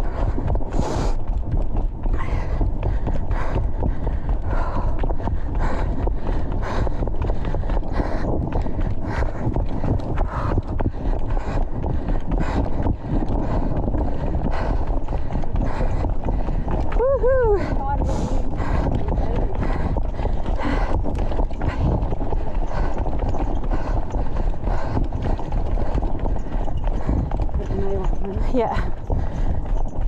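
Running footsteps on a dirt trail, a steady beat of footfalls about three a second, over the low rumble and rubbing of a body-worn camera and the runner's hard breathing. A short pitched, gliding voice sound comes about 17 seconds in.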